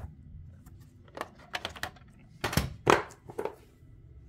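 Plastic VHS clamshell case and cassette being handled, with a few light clicks and then two louder knocks about two and a half and three seconds in, typical of the case being snapped open and the tape taken out.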